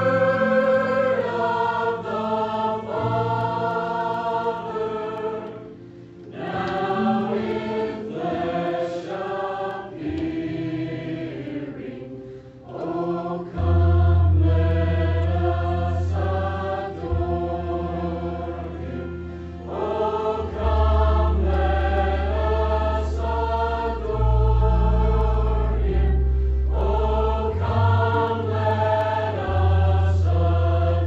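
Mixed choir singing a Christmas worship medley in parts, in phrases with brief pauses between them. Deep sustained bass notes of the accompaniment come forward about halfway through.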